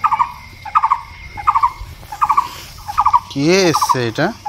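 A bird calling over and over: short, quick calls repeating about once every three-quarters of a second. Near the end a louder cry rises and falls in pitch.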